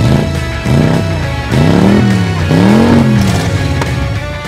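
Motorcycle engine revving sound for a ride-on toy motorcycle pulling away: a few revs, each rising then falling in pitch, over background music.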